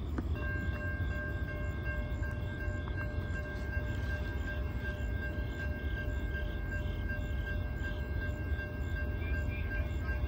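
A Norfolk Southern SD60E's five-chime K5LA air horn sounding one long, steady chord from about half a second in, over a deep rumble. A faint ring pulses about twice a second behind it.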